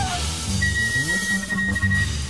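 Free jazz from a wind, double bass and drums trio: a single high, pure note on a wind instrument comes in about half a second in and is held, over double bass and drums.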